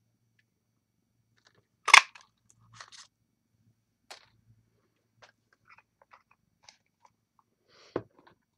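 Handheld ticket punch snapping shut once through cardstock about two seconds in, a loud sharp crunch as it cuts the shape out, followed by a few faint clicks.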